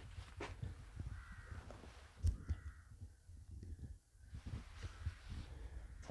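A bird calling faintly twice, about a second in and again around two and a half seconds in, over a low rumble and a single knock from the phone being carried.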